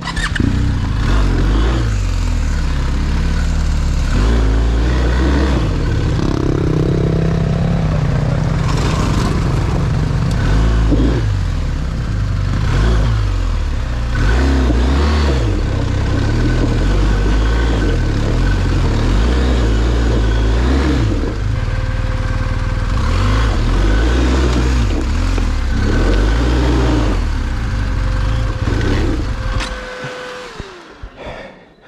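BMW R1250 GSA's boxer-twin engine pulling away from a stop and climbing a rocky trail, its revs rising and falling with the throttle. Short knocks over the stones are heard now and then.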